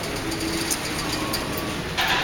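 Steady background noise of a large indoor room, an even hiss and rumble with faint music behind it.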